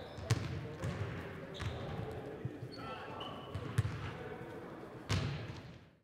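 Basketballs bouncing on a hardwood gym floor, a few irregular thuds several seconds apart, with faint voices in the background.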